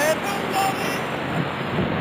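Soundtrack of an old wartime recording: a steady rushing noise with brief snatches of a voice near the start and about half a second in.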